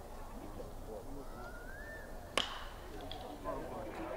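Low murmur of a ballpark crowd, then a bit over halfway one sharp crack of a bat hitting a pitched ball, with a short ring after it.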